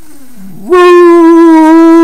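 A man's voice holding one loud, steady 'ooh' note for about a second and a half, starting under a second in after a short low sliding groan, and cutting off sharply at the end.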